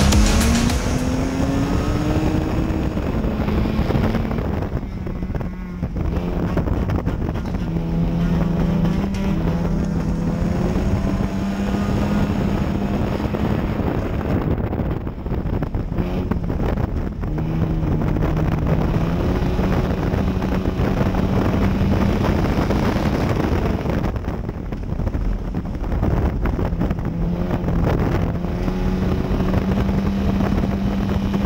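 Front-wheel-drive dirt-track race car's engine heard from inside the car under racing load. The engine note repeatedly climbs, then drops back several times before rising again, with steady wind and road noise underneath.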